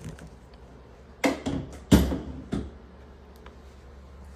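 Three sharp knocks and clatters about half a second apart, the middle one loudest, like hard objects being handled and set down.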